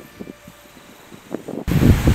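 Wind buffeting the microphone: a quiet stretch with a few faint knocks, then a sudden loud, low rumble of wind gusting across the mic near the end.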